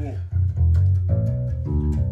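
Five-string electric bass guitar played fingerstyle: a quick run of short plucked low notes, changing pitch every fraction of a second.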